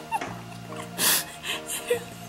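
Soft background music, over a woman's breathy giggles with a sharp breathy burst about a second in, as a wire scalp massager tickles her head.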